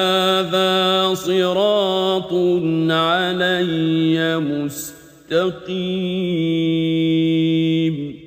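A man reciting the Quran in Arabic, in melodic chanted recitation, drawing out long held notes in two phrases with a brief pause about five seconds in.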